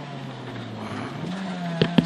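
Honda Integra rally car's four-cylinder engine heard from inside the cabin, its revs falling through a left-hand bend and then climbing again about a second and a half in. A couple of sharp knocks near the end.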